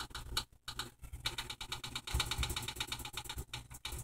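Kenmore oven's electronic control panel beeping in a fast, even run of short beeps, about ten a second, as the temperature setting is stepped up from 300° to 450°; a few scattered button clicks come in the first second.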